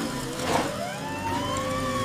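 Emergency-vehicle siren wailing: a single tone rising slowly for about a second and a half, then starting to fall, over a low steady vehicle rumble.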